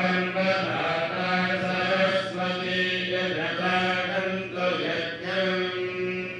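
Priests chanting mantras on a steady recitation pitch, in held phrases with brief pauses every second or two.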